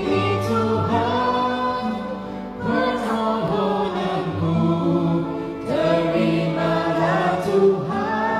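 A woman singing a Malay-language Christian worship song into a handheld microphone, in held phrases with musical accompaniment underneath.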